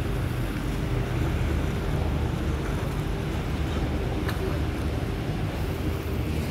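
Choppy high-tide sea water washing and splashing against stone seawall steps, in a steady rush, with wind rumbling on the microphone and a faint steady hum under it.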